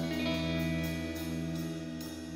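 Guitar chord ringing on and slowly fading, with its notes held steady.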